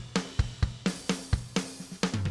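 Multitrack rock drum kit playing back through a mix: kick, snare and hi-hat/cymbals in a steady pattern of about four hits a second at 128 BPM, with a distorted parallel 'grit' drum track blended in.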